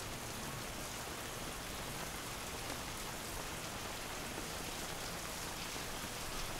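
Shower running: a steady hiss of spraying water.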